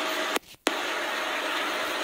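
Steady hiss of background noise, broken by a brief silent gap about half a second in.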